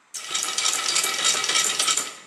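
Motor-driven toothed belt of an automatic flexible blackboard machine scrolling the board to a preset position. It makes a dense rattling run with a faint steady whine, starting abruptly just after the start and lasting about two seconds.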